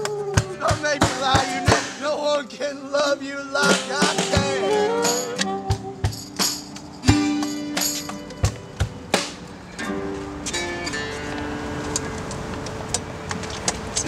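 Acoustic blues band playing: two steel-string acoustic guitars strumming, a saxophone playing melodic lines, and frequent sharp drum hits. About seven seconds in, the playing thins to held notes and ringing chords at a lower level, the song winding down to its end.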